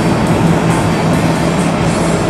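Steady engine drone and road noise inside a moving RV's cab, with a constant low hum.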